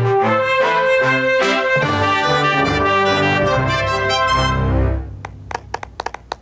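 A short band tune led by trumpets over drums, bright brass notes moving in a melody with a steady beat; it ends about five seconds in, followed by a few scattered hand claps.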